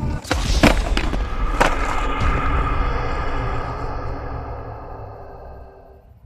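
A skateboard clacking hard on a concrete sidewalk, three sharp knocks in the first two seconds, over background music that slowly fades out.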